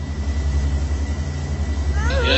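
A loud, low droning hum that grows steadily louder.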